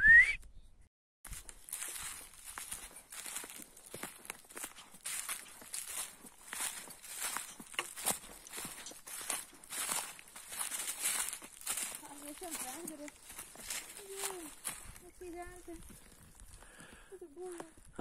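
Footsteps crunching through dry fallen leaves on a forest trail at a steady walking pace.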